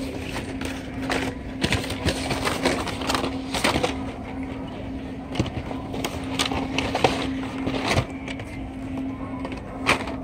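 Carded Hot Wheels blister packs rustling and clacking against each other as a hand sorts through a box full of them, with many sharp clicks of plastic and cardboard. A steady low hum runs underneath.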